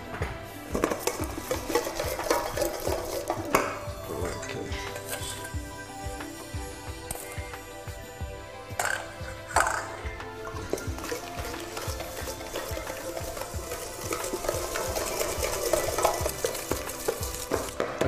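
A wire whisk creaming butter and sugar in a stainless steel mixing bowl, its rapid, even strokes scraping and clinking against the metal, over background music.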